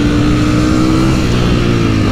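Ducati Panigale V4's V4 engine pulling at high revs in third gear at about 115 km/h, heard from the rider's seat. The note holds steady, creeps up slightly, then eases off a little near the end.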